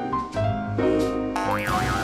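Cartoon soundtrack music, with a springy boing sound effect about one and a half seconds in that wobbles quickly up and down in pitch: a diving board springing and flinging the character into the air.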